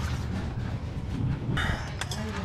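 Rustling handling noise as a handheld camera is moved, over a low steady hum, with a short scrape about one and a half seconds in.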